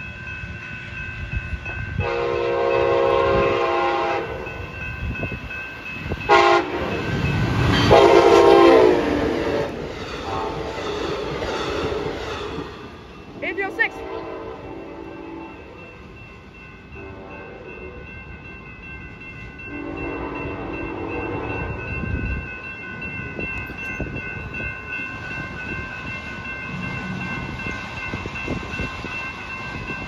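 Passenger train sounding its horn in several blasts as it approaches and passes a grade crossing, the loudest blast about seven to ten seconds in, with the steady rolling noise of the train on the rails between and after the blasts.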